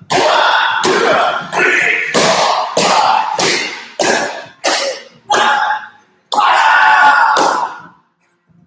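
Taekwondo kicks and landings on a foam mat with kihap shouts: about ten sudden loud hits in quick succession, each trailing off in hall echo, the longest near the end.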